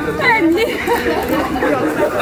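Several people talking at once, their voices overlapping in lively chatter.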